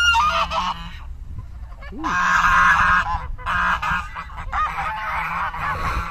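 A flock of domestic geese honking, many calls overlapping, loudest from about two seconds in. They are swimming up to the shore and begging for food.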